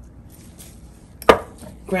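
Faint sound of dry seasoning being shaken onto raw chicken breasts on a cutting board, then a single sharp knock a little past halfway through.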